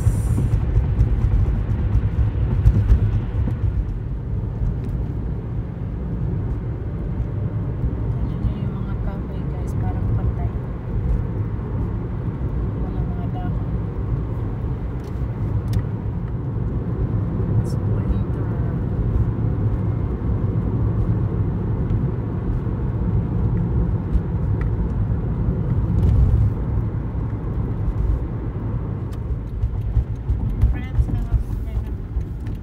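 Steady low rumble of a car driving, heard from inside the cabin: engine and tyre-on-road noise at an even level.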